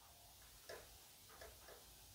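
Near silence: room tone, with two very faint brief sounds less than a second apart.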